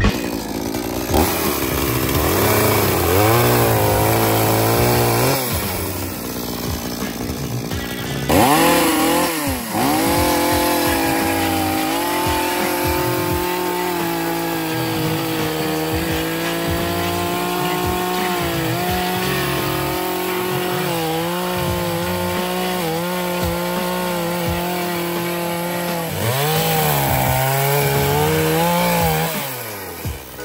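Chainsaw running and cutting through logs. Its pitch sags as the chain bites into the wood and climbs again as it frees, several times over.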